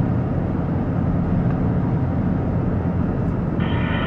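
Steady low rumble of road and engine noise heard inside a car's cabin while it drives at about 65 km/h.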